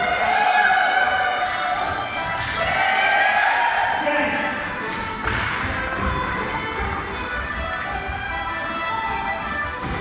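Live traditional Irish reel music played by a small group of musicians, with dancers' feet thudding on the hall floor and voices of the crowd.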